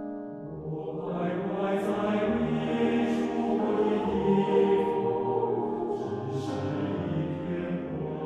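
Mixed choir singing a Mandarin-language arrangement of a Kazakh folk song, accompanied by a Steinway grand piano. The piano plays alone for about the first second before the voices come in, and the singing swells in loudness toward the middle.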